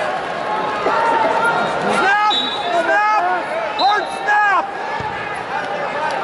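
Short, repeated shouts from coaches and fans over steady arena crowd noise, the yells coming about every half second. A single dull thump about five seconds in.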